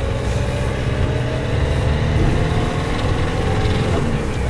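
Cab noise of a GAZelle light truck's Cummins turbodiesel running on the move: a steady low rumble with road noise and a faint whine that rises slowly in pitch, as when gaining speed.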